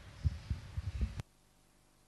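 Several dull, low thumps over a faint room murmur, ending in a sharp click about a second in, where the sound cuts off abruptly to near silence.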